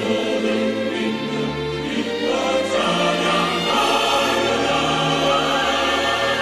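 Mixed choir of men and women singing a Korean Christmas hymn in parts, held chords over an accompaniment whose bass moves from note to note.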